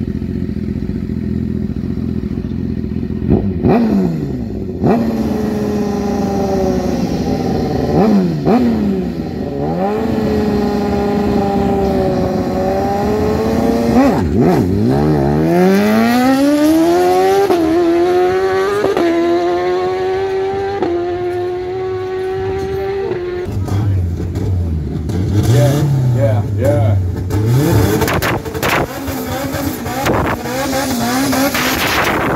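Sport bike engine idling at a drag strip start line and revved in a few short blips, then launching about halfway in: its pitch sweeps up and steps through several quick upshifts as it pulls away and fades. Near the end a lower car engine idles and revs.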